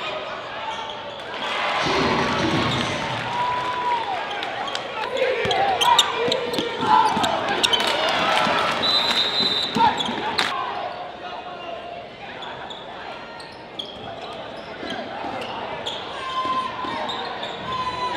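Live gym sound of a high school basketball game: many crowd voices calling and shouting, ringing in a large hall, with the ball bouncing on the hardwood floor and scattered sharp knocks. The voices are loudest from about two seconds in to about eleven seconds in, then ease off.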